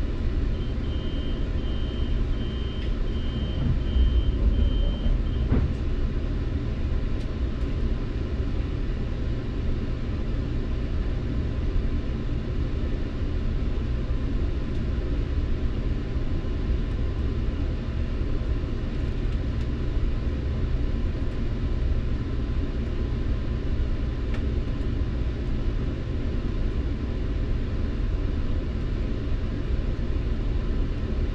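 Metrolink commuter train: a beeping door-closing warning sounds for about five seconds, followed by the train's steady low rumble as it pulls away.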